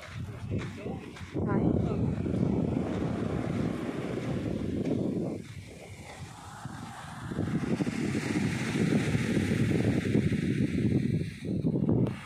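Wind buffeting the microphone over small waves breaking and washing up a sand beach. The wind eases briefly about halfway through.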